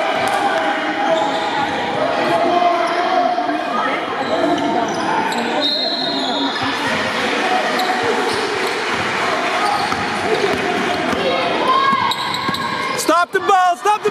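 Basketball bouncing on a hardwood gym floor in a large gymnasium, over indistinct voices of players and spectators. Shoes squeak sharply on the floor near the end as play moves up the court.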